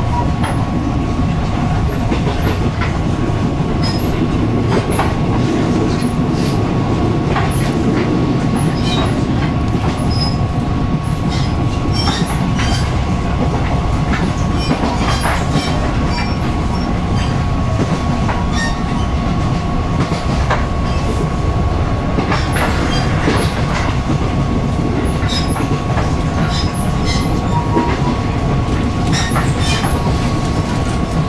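Interior of a moving Taiwan Railway EMU500 electric multiple unit at speed: steady running noise of the wheels on the rails, with frequent irregular sharp clicks and a constant high tone.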